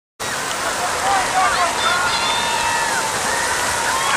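Heavy rain falling in a steady hiss, with high-pitched voices calling out faintly over it.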